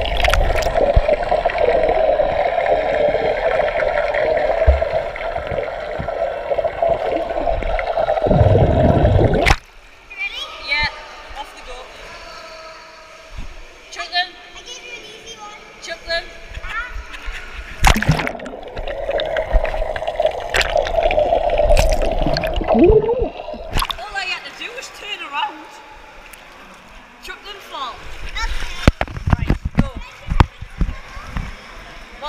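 Water sloshing and splashing close to the microphone, with voices in the background. A steady rushing water noise dominates for about the first nine seconds and cuts off suddenly, then returns briefly around twenty seconds in.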